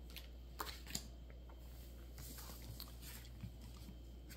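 Trading cards being picked up off a playmat and handled: two or three light clicks in the first second, then faint rustling and sliding.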